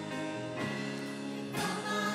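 Live worship band music: electric guitar and bass guitar holding slow sustained chords with singing voices, changing chord about one and a half seconds in.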